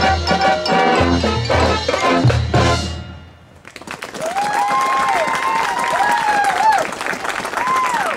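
Marching band brass and percussion play the last bars of a show, building to a loud final chord that cuts off about three seconds in. After a brief lull, the crowd applauds and cheers, with drawn-out whoops over the clapping.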